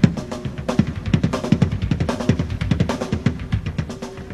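Drum kit played in a fast solo: a dense run of sharp strokes on drums and cymbals, several hits a second, with low drum tones ringing under them.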